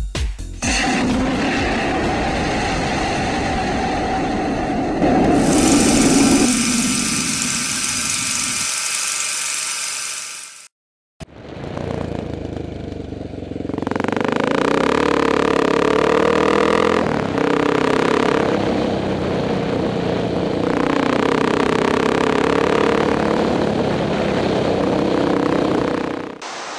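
About ten seconds of intro music that cuts off abruptly. After a moment's silence, a Honda XR600R's single-cylinder four-stroke engine runs steadily as the bike is ridden, its pitch shifting slightly with the throttle.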